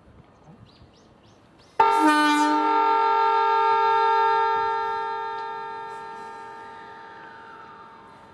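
A train horn sounds about two seconds in. It is a single loud, steady note that starts suddenly, holds for a couple of seconds, then slowly fades away.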